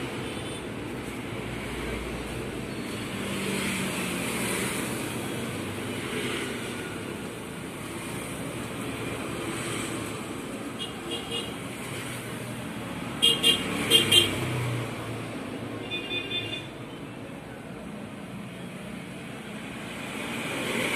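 Steady background road-traffic noise, with a vehicle horn sounding a few short, quick beeps about two-thirds of the way through and fainter beeps shortly before and after.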